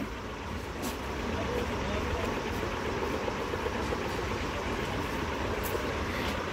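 Steady background noise, a low rumble and hiss with no clear pitch, and a faint rustle of cloth as a garment is picked up and laid down.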